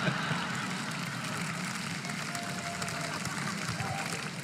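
Stand-up comedy audience laughing and applauding after a punchline: a steady wash of crowd noise.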